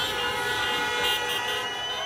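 Several car horns held down together, a steady honking of a few tones at once, over street noise: celebratory honking from cars in a crowd.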